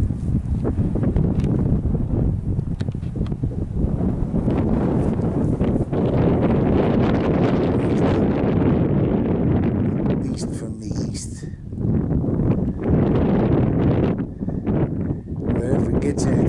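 Wind buffeting the microphone: a heavy low rumble that swells and dips unevenly, with brief rustles now and then.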